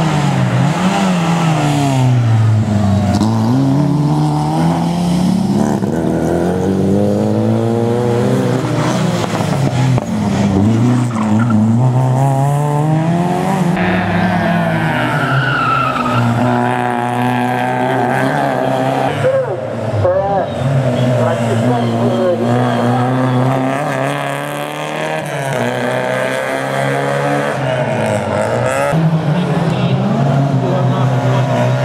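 Rally car engines revving hard through the gears, their pitch climbing and dropping again and again as the cars brake, slide through a corner and accelerate away. Tyres squeal as a car slides through the turn about halfway through.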